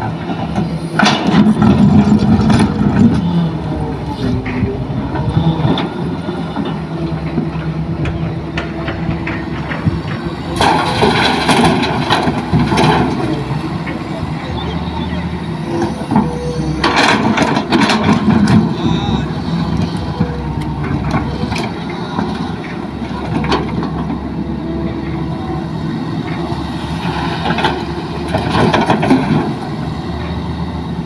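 Hitachi hydraulic crawler excavator's diesel engine running steadily under load as it digs and swings, with several louder bursts of noise as the bucket works the soil and rock.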